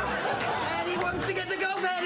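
Overlapping chatter: several voices talking at once, with no clear words.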